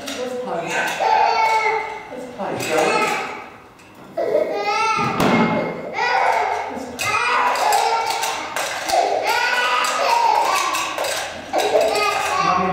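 Wordless voices rising and falling in pitch nearly the whole time, with a few thuds of toys on the carpeted floor.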